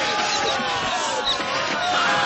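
Several men shouting and screaming over one another in a chaotic film fight, with scattered dull thuds.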